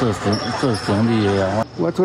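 Speech only: a man talking, cut off shortly before the end by an edit to another voice.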